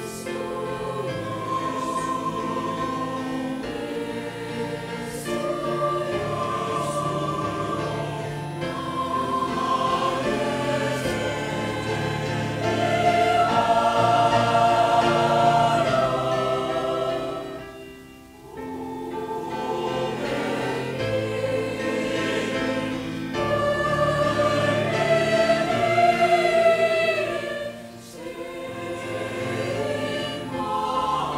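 Mixed choir of men and women singing a slow Korean-language passage in sustained chords, phrase after phrase, loudest in the middle phrase. The singing breaks off briefly between phrases about 18 and 28 seconds in.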